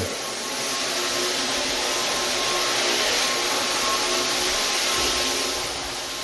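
Rotary floor buffer running steadily as it screens oil-based polyurethane off a hardwood floor: a continuous whirring, hissing motor-and-pad noise.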